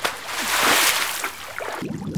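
A whooshing, splashy transition sound effect swells and fades over the animated wipe. A lower, steadier sound comes in near the end.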